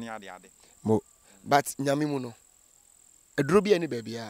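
A steady high-pitched trill of crickets running under a man's voice, which speaks in short phrases with gaps between them.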